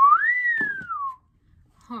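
A person whistling: a short upward chirp, then one long note that rises and glides slowly back down, an admiring whistle.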